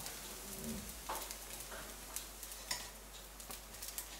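A dosa frying in a hot nonstick pan: faint sizzling with scattered small crackles, and light touches of a slotted spatula against the pan as the dosa is folded.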